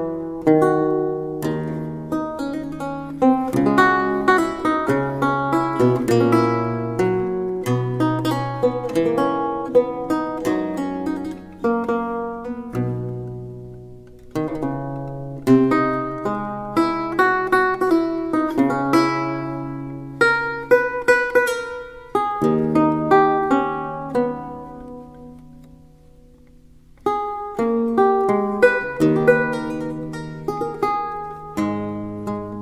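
Baroque lute playing an allemande: plucked notes ringing over low bass courses. About three-quarters of the way through, the music dies away on a fading chord, and playing resumes a few seconds later.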